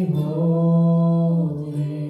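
Live singing: voices hold one long sung note for about a second and a half, then let it fall away.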